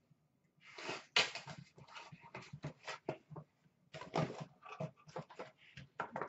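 Box cutter slitting the packing tape on a cardboard case, then the cardboard flaps being worked open: a quiet run of short rasps and scrapes with brief pauses.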